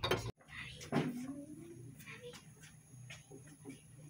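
Faint room sound with a low steady hum, a few light clicks, and one brief voice-like call that falls in pitch about a second in.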